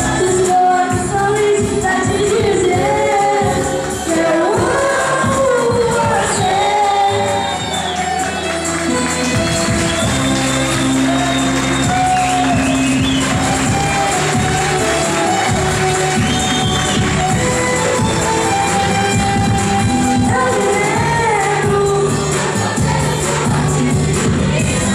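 Live music: a singer's voice through a microphone and PA over a backing track with held bass notes, continuous throughout.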